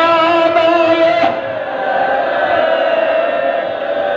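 A crowd of men chanting a mourning lament together in long held notes, growing a little softer and duller after about a second.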